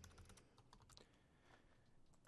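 Faint typing on a computer keyboard: a few light key clicks.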